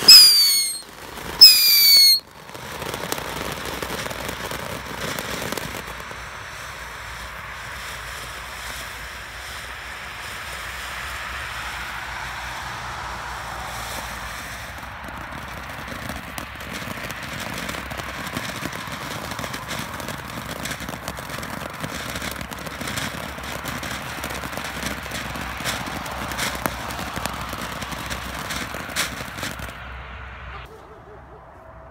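Ground fountain firework going off: two loud whistles, each falling in pitch, in the first two seconds. Then a steady hiss of spraying sparks, with scattered crackles that grow more frequent in the second half.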